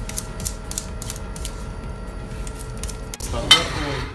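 Small knife cutting and scoring the edge of a sheet of water-transfer printing film on a glass table, a series of short scratchy strokes. Near the end there is a single brief, loud noise.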